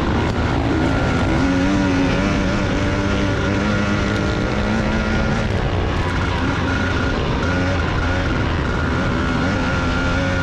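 Motors running in a steady drone, with several whining tones that hold a near-constant pitch and waver slightly.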